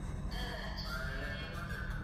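A person crying in a high, wavering wail, over a steady low hum.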